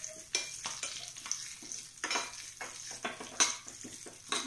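Curry leaves and chilli powder sizzling in hot oil in a small tempering pan, with a spoon scraping and clicking against the pan several times as it is stirred.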